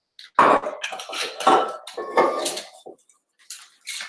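Vodka poured from a jigger into a metal cocktail shaker, with clinks of metal barware: several short pours in the first three seconds, then a couple of light clicks near the end.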